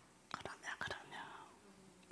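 A faint whispered voice with a few soft mouth clicks close to the microphone, in a pause in the preaching.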